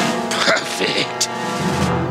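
Dramatic cartoon soundtrack music, a held chord punctuated by a few sharp hits, with a man's voice over it.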